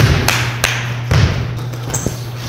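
Basketballs bouncing on a gym floor: about five irregular thuds over two seconds.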